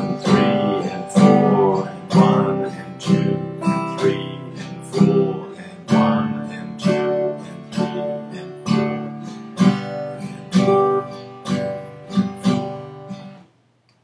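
Acoustic guitar strummed in a steady rhythm, cycling through the G, C and D chords of a beginner's G–C–D progression. The strumming stops suddenly just before the end.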